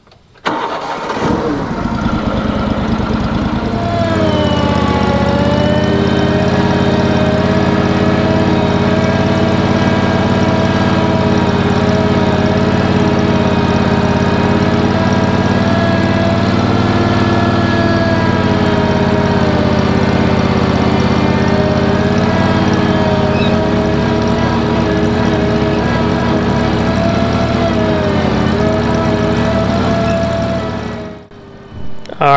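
Ventrac compact tractor running hard while its Tough Cut brush-mower attachment cuts tall, overgrown grass. The engine note starts suddenly, dips in pitch about four seconds in, then holds steady with slight wavers.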